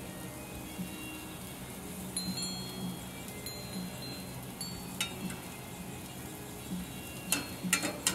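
Wind chimes ringing lightly now and then with short high tones, over a steady low hum. Metal tongs click sharply once about five seconds in and a few times near the end.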